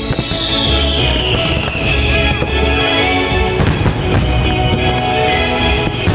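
Fireworks bursting over loud show music, with sharp bangs around the middle and again at the end. A long falling whistle is heard over the first couple of seconds.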